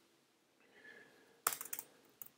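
A few quick computer keyboard keystrokes in close succession, about one and a half seconds in, as the Return key adds blank lines in a code editor.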